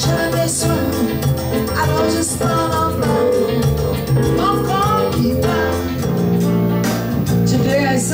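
Live jazz band: a woman singing into a microphone over electric keyboard and electric bass guitar, played through a PA.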